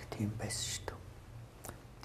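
Quiet, breathy speech, low in level, with a brief hiss of breath or a sibilant about half a second in.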